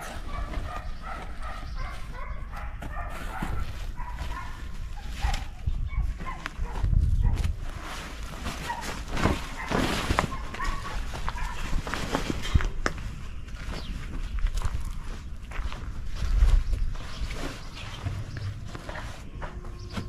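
Fabric covers rustling and flapping as they are lifted and handled, with intermittent low rumbles of wind on the microphone.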